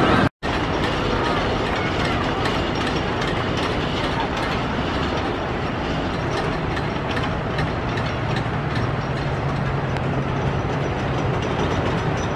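Wooden roller coaster train running on its track: a steady rumble with many quick clicks and rattles, and a low hum coming in past the middle.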